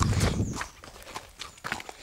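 Pony's hooves and a person's footsteps on a dirt track as the pony is led at a walk: scattered, uneven steps. A loud rumble fills the first half-second.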